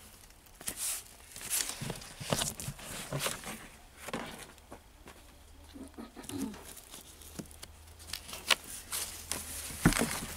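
Cardboard vinyl record jackets being flipped through in a plastic bin: irregular sliding scrapes and soft slaps of the sleeves against one another, busiest in the first few seconds and again near the end.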